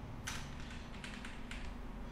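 Computer keyboard keys clicking in a quick run of several presses, pasting the same line of HTML again and again.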